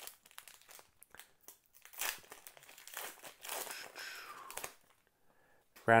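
Plastic wrapper of a Panini Mosaic football cello pack being torn open and crinkled by hand, in a run of short rustles and crackles that stops about a second before the end.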